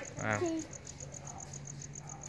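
Crickets chirping in a fast, even, high-pitched pulse, about seven chirps a second.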